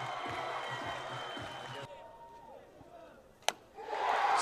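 Ballpark crowd murmur with scattered voices, cutting to a quieter crowd about halfway through. Near the end comes a single sharp crack of a bat hitting the ball.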